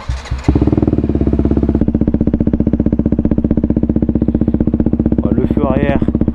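A motorcycle engine comes on abruptly about half a second in and then idles steadily and loudly with an even, rapid pulse.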